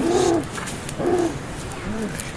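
Children's voices hooting and laughing in play: two short, arching calls, one at the start and another about a second later.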